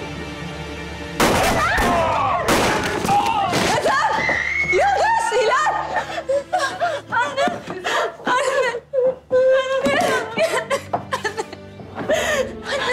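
A young woman crying and sobbing in bursts, over dramatic background music, which comes in with a sudden loud hit about a second in.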